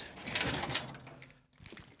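A short scraping, rustling noise as the platter drive is pushed forward in the minicomputer cabinet and the cables behind it shift, fading out about a second and a half in, with a few faint ticks near the end.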